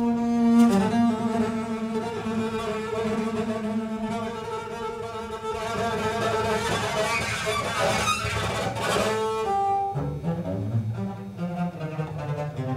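Double bass played with a bow in free improvisation: long held notes, a scratchy, noisy passage of bowing from about halfway, then shorter, lower notes near the end.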